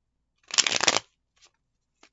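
A deck of tarot cards being shuffled by hand: one quick burst of cards riffling against each other, about half a second long, starting about half a second in, followed by a few faint ticks of the cards.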